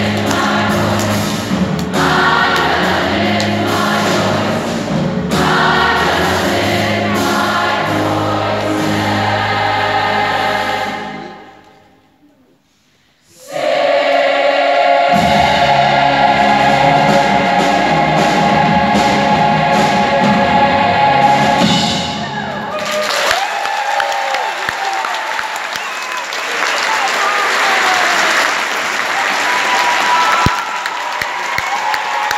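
A large youth choir sings with piano and drum kit, stops briefly about halfway, then comes back in and holds a long final chord. The audience then breaks into applause for the last third.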